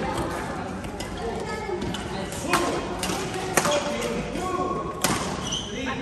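Badminton rackets striking a shuttlecock: three or four sharp cracks spread over a couple of seconds during a rally, with voices chattering in the background.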